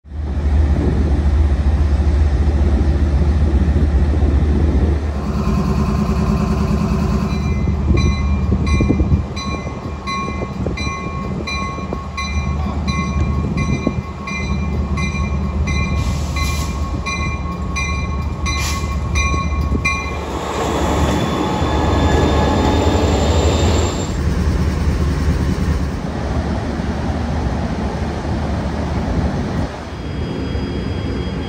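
Passenger train standing at a station platform with its diesel locomotive idling in a low rumble. Its bell rings evenly at roughly one and a half strokes a second for about twelve seconds, from about a quarter of the way in. Past the two-thirds mark a loud rushing hiss swells up for a few seconds.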